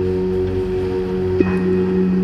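Steady devotional background music: a drone of several held low tones, with a faint high ringing tone that comes in a little past halfway.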